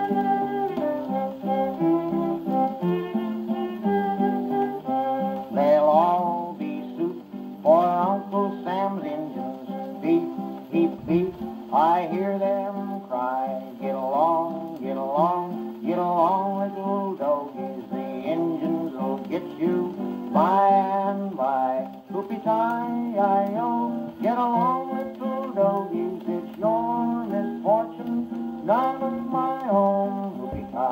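Old 78 rpm shellac record playing through an acoustic phonograph's soundbox and horn: strummed guitar accompaniment with no words, joined from about six seconds in by a melodic line that slides between notes.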